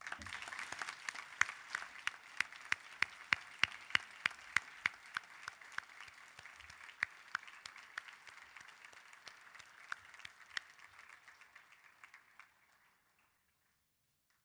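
Audience applauding, with one nearby clapper standing out in loud, even claps about three times a second. The applause thins out and stops near the end.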